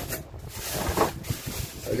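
Plastic bags rustling as small metal hinges and latches are handled and sorted inside them, with light knocks of the hardware.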